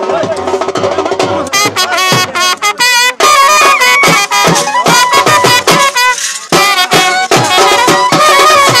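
Village drum band playing: double-headed drums beaten with sticks, coming in strongly about a second and a half in, under a wavering reedy wind-instrument melody.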